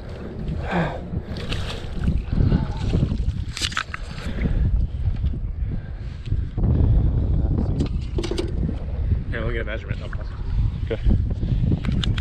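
Wind rumbling steadily on the microphone, with short bursts of voice and a few sharp clicks over it.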